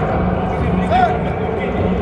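Indistinct voices over a steady low hum, with two short rising-and-falling chirps.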